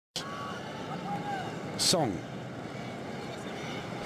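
Steady crowd noise from a large football stadium crowd during a match. A commentator's voice cuts in briefly just before the midpoint.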